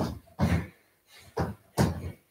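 Trainer-shod feet landing on a floor during a cardio jumping exercise, jumping out into a wide squat and back together: about four short thuds in two seconds.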